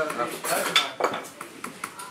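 Dishes and cutlery clinking and knocking: a handful of irregular sharp clinks, the strongest about a second in, as kitchenware is handled during food preparation.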